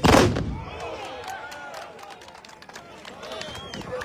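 A single loud volley of black-powder muskets fired together by a line of charging tbourida horsemen, one blast that dies away within about half a second, followed by voices from the crowd.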